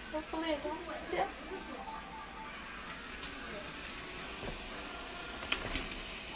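Pepper, onion and tomato-paste base sizzling steadily as it fries in a pot, with a few sharp knocks near the end as the cabbage goes in.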